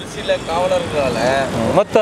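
A man's voice speaking over road traffic noise, with a vehicle passing close by.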